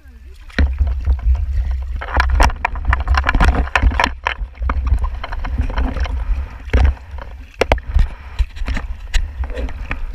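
Water sloshing and splashing against an action camera's waterproof housing held at the sea surface, with a heavy low rumble and many sharp knocks and clicks as the housing moves in and out of the water. It gets much louder about half a second in.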